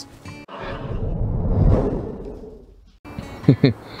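A whoosh that swells and fades over about two seconds, then cuts off abruptly at the edit, followed by a short laugh near the end.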